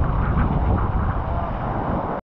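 Loud, steady rush of wind buffeting the microphone and water spraying as a towed inner tube skims across a lake's wake.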